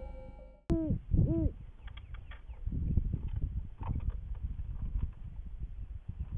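Two short owl calls from great horned owls, each rising and then falling in pitch, about a second in. After them come low rumbling noise and faint clicks on the trail camera's microphone.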